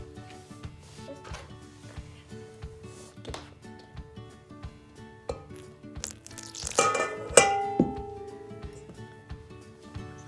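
A metal fork clinking against a stainless steel mixing bowl as warm water is poured in from a glass jar. The loudest strikes come about seven seconds in and leave the bowl ringing. Soft background music with held notes runs underneath.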